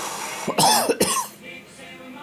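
A man coughs twice in quick succession, the first cough longer and the second shorter.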